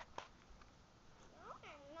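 Near silence with a couple of faint clicks, then a faint, drawn-out voice gliding up and down in pitch near the end.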